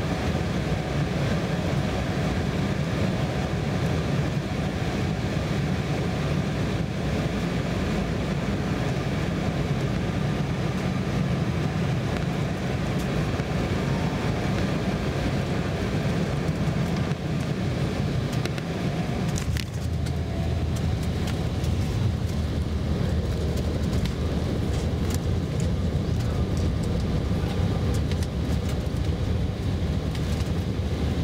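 Steady roar of a jet airliner's engines and airflow heard from inside the cabin as it comes in low, touches down and rolls out along the runway. About two-thirds of the way through, the sound drops to a lower rumble with light rattling as the plane slows on the ground.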